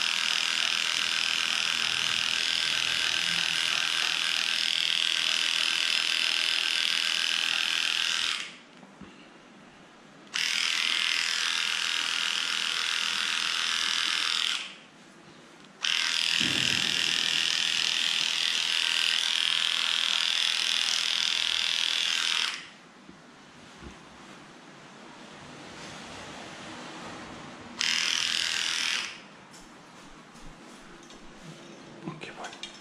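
Cordless electric dog clipper running with a steady high-pitched buzz as it shaves through a cocker spaniel's matted coat. It is switched off and back on three times, with quiet gaps of about two, one and five seconds, and a last short run near the end before it stops.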